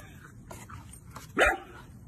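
A puppy gives one short, sharp bark about one and a half seconds in.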